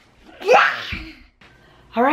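A single loud sneeze: a short rising breath-sound with a noisy rush, followed at once by a dull thump.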